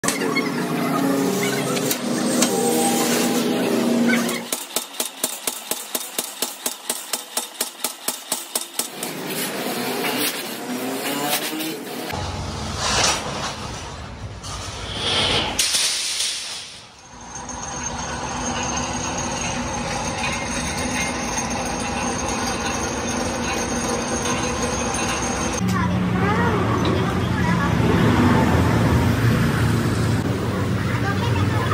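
Metal workshop noise with men's voices, changing at several cuts. About five seconds in comes a run of rapid regular strokes, about four a second for roughly four seconds, from a flywheel-driven mechanical power press working steel sheet.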